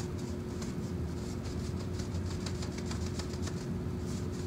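A paintbrush scrubbing back and forth over a painted wooden cabinet door, a quick run of scratchy bristle strokes as wet chalk paint is blended, over a steady low hum.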